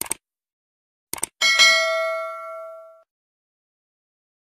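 Short clicks, then a pair of clicks about a second in, followed by a bright notification-bell ding that rings and fades out over about a second and a half: the sound effect of a YouTube subscribe-button and bell animation.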